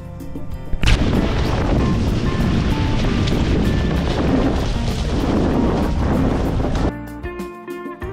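Background guitar music, cut about a second in by a sudden, loud rush of wind and water noise on the microphone of a sailing catamaran. The rush lasts about six seconds, with the music faint beneath it, then the music returns clearly near the end.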